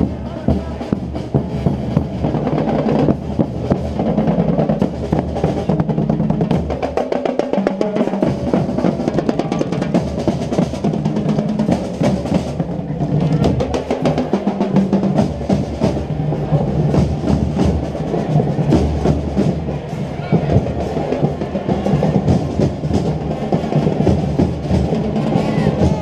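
Marching band drum line playing a cadence: bass drums keeping a steady beat under rapid snare drum strokes and rolls.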